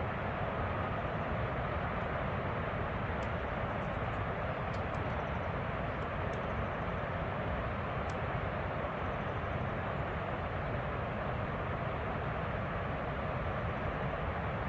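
Steady roar of high-volume water rushing down the Oroville Dam spillway: an even, unbroken rushing noise with no rise or fall.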